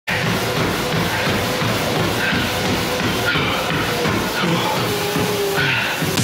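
Music playing at a steady, loud level.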